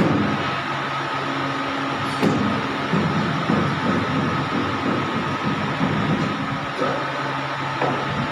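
Hydraulic three-roller pipe bending machine running: a steady hum from its electric motor and hydraulic pump, with several fixed tones, as the rollers curve a steel bar. There is a sharp click about two seconds in.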